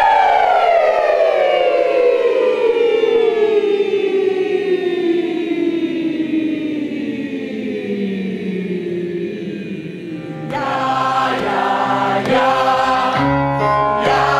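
A choir of many voices sliding slowly downward in pitch together in one long vocal glide, a warm-up exercise, for about ten seconds. Then, after a sudden change, the choir sings sustained chords.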